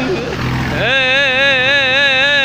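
A held voice note breaks off, and about a second in a singer comes in with a strong, wavering vibrato over a music track.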